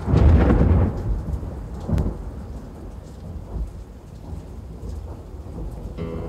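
Recorded thunder: a loud, deep thunderclap opens, a second crack follows about two seconds in, and low rolling rumble dies away after it. This is a sound effect bridging two songs on a hard rock album.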